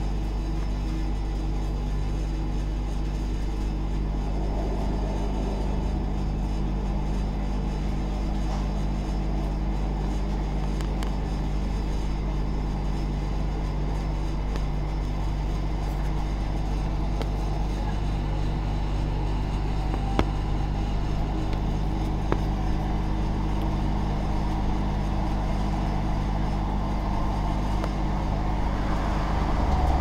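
Electric multiple-unit train heard from inside the carriage while running: a steady low electric hum with rumbling wheels on the rails and a couple of single clicks past the middle.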